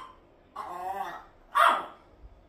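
Hungry pets crying to be fed: a drawn-out wavering cry starting about half a second in, then a short, louder cry near the end.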